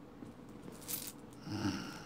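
Small clicks and rustles of hands handling things close to the microphone, then a short hummed vocal sound about one and a half seconds in.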